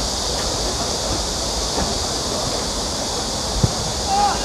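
A football kicked once near the end, a single sharp thud, over steady outdoor hiss and low rumble.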